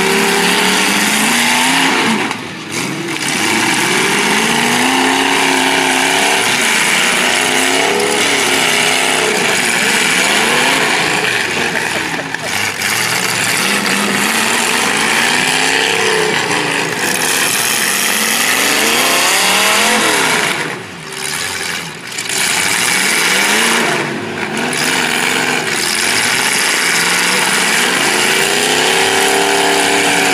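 Several demolition-derby cars' engines revving up and down, their pitches rising and falling and overlapping, over a steady noisy background.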